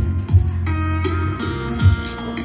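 Guitar music with a deep bass line and drum hits, played back through a pair of Prodio 480 MkII Japanese karaoke speakers.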